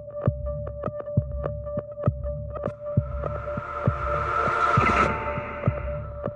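Background music: a held drone under a pulsing, heartbeat-like beat, with a rising swell that builds and cuts off suddenly about five seconds in.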